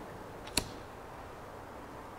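A single short, sharp click about half a second in, over faint room tone.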